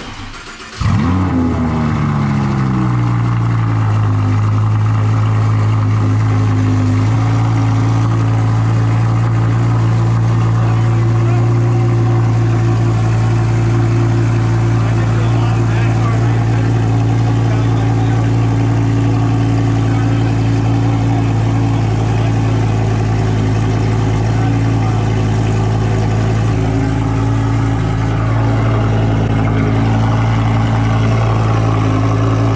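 Audi R8's 5.2-litre V10 cold-starting about a second in, flaring up loudly and falling over the next couple of seconds to a steady high cold idle.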